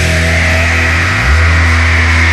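Heavy hardcore music: distorted guitars and bass holding low sustained notes that drop to a lower note about a second in, with a held high whine over them.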